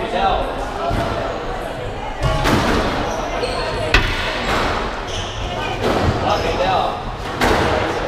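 Squash ball impacts on racket, walls and floor during play, several sharp echoing strikes with the loudest about four seconds in, along with shoe squeaks and footsteps on the wooden court floor. Voices murmur in the background.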